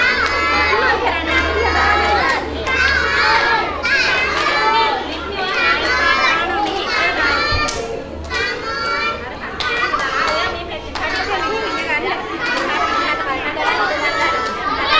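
Many young children's voices chattering and calling out at once, a continuous din echoing in a large hall.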